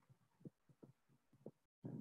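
Near silence with a few faint, irregular low thumps and a brief total cut-out near the end.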